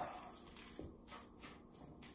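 Fork mashing ripe bananas in a stainless-steel bowl: faint, soft squishing strokes, with a light click of the fork against the bowl at the start.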